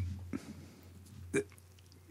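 A pause in conversation over quiet room tone, broken about a second and a half in by one short, sharp throat or mouth sound from a speaker, like a hiccup or click.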